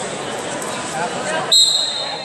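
A referee's whistle blows once, a short high shrill blast about one and a half seconds in, over the chatter of a sports hall.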